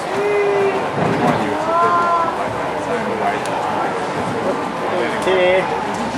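Indistinct chatter of a crowd of people talking in a hall, with a few voices standing out briefly over the general babble.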